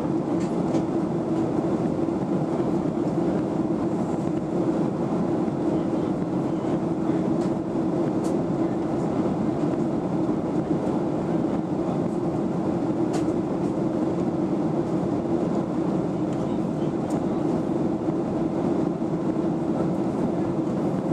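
Steady cabin noise inside a Boeing 737-800 in flight: the drone of its jet engines and the rush of air past the fuselage, with a steady low hum running under it and a few faint ticks.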